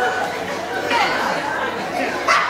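Speech: actors talking on stage.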